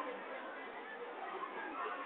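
Faint background chatter of several people's voices over a steady hiss.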